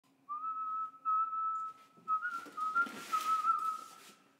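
A high whistle held at nearly one pitch with a slight waver, breaking off twice in the first two seconds. A rush of hiss joins it in the second half and fades out with it near the end.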